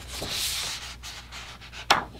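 A heavy 200 gsm page of a Hahnemühle toned gray watercolor sketchbook being turned by hand: a soft papery swish lasting about a second. A sharp click follows near the end.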